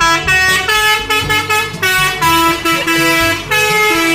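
Multi-tone melodic air horn on a truck playing a tune of held notes that step up and down, in the style of an Indonesian 'telolet' horn, over a low engine rumble.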